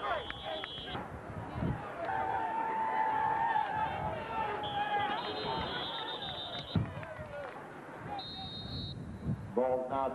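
Voices of players and spectators at an outdoor football game, with three long, high whistle blasts from officials' whistles: one at the start, one from about five to seven seconds in, and a short one near the end. A lower held tone sounds for a few seconds in between.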